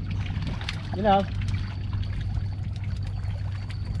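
A steady low mechanical hum, like a motor running, under faint water noise.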